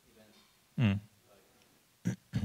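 Speech only: a faint voice off the microphone, and one short, loud spoken syllable close to the microphone just under a second in.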